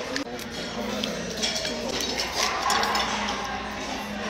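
Crab-leg shells being cracked and pulled apart by hand, a few small sharp crackles and clicks over steady background restaurant chatter.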